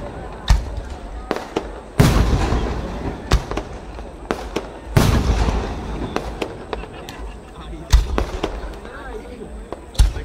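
Aerial firework shells bursting overhead: big booms about two seconds in and again about five seconds in, each trailing off in a long rolling echo, with sharper single bangs and small cracks between them, near the start, around three seconds in and about eight seconds in.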